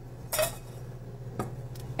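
Metal kitchenware clinking and knocking: a whisk and small metal bowl set against a large stainless steel mixing bowl, and a spatula picked up. There are three short clinks, about half a second, a second and a half and near the end, over a steady low hum.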